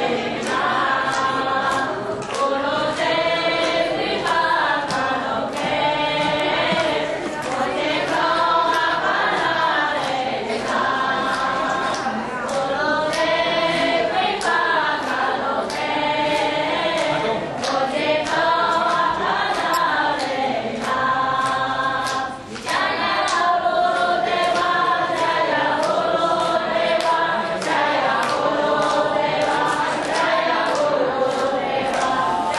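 A group of Vaishnava devotees singing a devotional chant together, many voices on one melody in repeating phrases, over a steady beat of sharp strikes about two a second.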